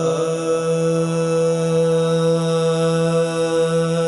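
A voice holding one long, steady chanted note, the opening intonation of a Sanskrit hymn to Shiva, over a steady musical drone.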